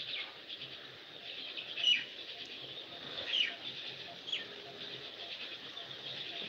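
Small birds chirping faintly in the background: a few short, downward-sliding chirps spaced a second or so apart, over low room noise.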